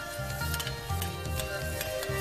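Chopped asparagus, onion and garlic sizzling gently in oil in a pan as they sweat, under background music.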